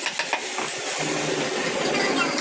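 Wooden mallet knocking a carving chisel into a wooden door panel, a few quick knocks near the start, then a steady machine-like hum from about a second in.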